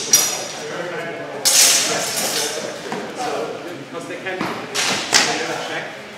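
Steel practice swords clashing in sparring: a few sharp strikes with a brief metallic ring, echoing in a large hall.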